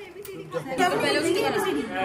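Several people talking over one another in background chatter, with no single clear voice; it grows louder about half a second in.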